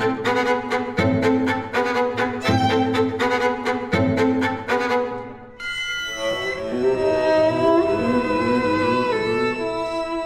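Bowed string music: short, rhythmic strokes about four a second for the first five seconds, then a brief break and long held notes.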